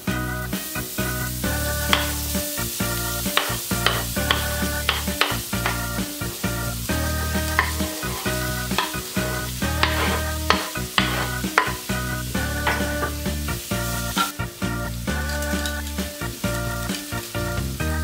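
Food sizzling as it fries in a pan, with frequent sharp clicks from a utensil stirring it, under background music with a steady bass line.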